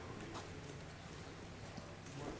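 Faint scattered knocks and clicks over a steady low hum of room noise, with a sharper click about half a second in.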